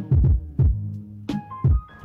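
Background music with a beat of deep bass thumps over a sustained low hum and a few soft held notes.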